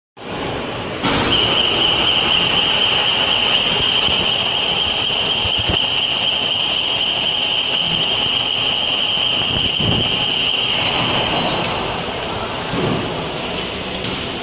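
Two-head CO2 laser cutting machine running while it cuts acrylic: a steady rushing hiss of air and fans, with a high steady whine that starts about a second in and stops about eleven seconds in.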